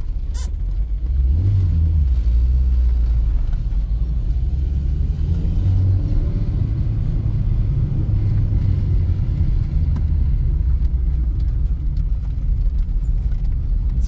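A 1990 Lada Samara (VAZ-2108) driving along, heard from inside the cabin as a steady low rumble of engine and road noise that swells about a second in, the engine pitch rising and falling a little. There is a single short click near the start.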